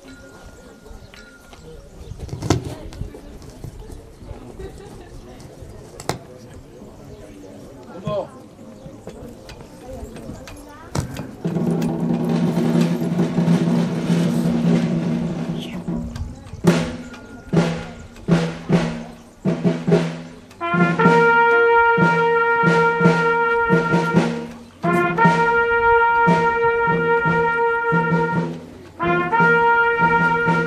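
A brass and drum band starts playing after a quiet spell broken by a few knocks. Low held brass notes come first, then a series of drum strokes, then long held trumpet notes in phrases of about four seconds, separated by short breaks.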